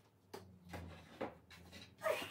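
Faint knocks and rustles as objects are handled on a wooden bench, four or five soft strokes spread across the moment.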